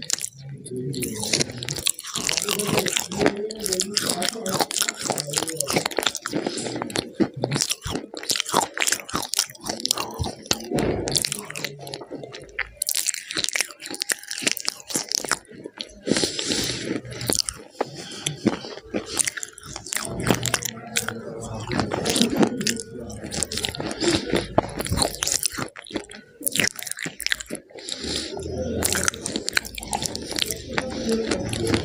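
Close-miked biting and chewing of a crunchy, powdery white substance, with dense crunches and mouth clicks.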